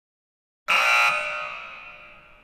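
A sudden, loud buzzer-like tone starts about two-thirds of a second in. It holds for about half a second, then fades away slowly.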